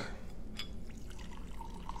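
Mezcal being poured from a bottle into a glass: a quiet trickle of liquid, with a faint steady tone as the glass fills from about a second in.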